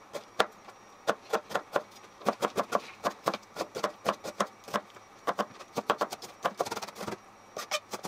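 Kitchen knife mincing an onion on a cutting board, sped up: a rapid run of sharp chopping taps, about three or four a second, quickening near the end.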